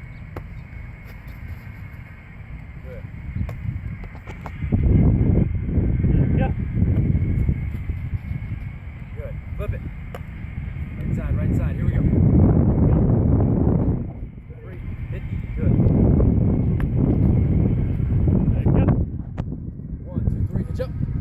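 Wind buffeting the microphone: a low rumble that rises and falls in three gusts.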